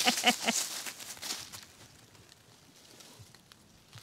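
A person laughing in quick repeated bursts that end about half a second in. Faint rustling and steps in dry leaves follow, then it settles to near quiet.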